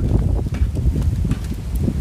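Wind buffeting the microphone: a loud, low rumble with uneven thumps.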